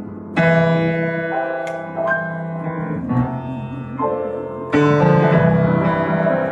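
Solo grand piano played in a slow, sustained style: a full chord is struck about half a second in and another near five seconds, with held melody notes between them.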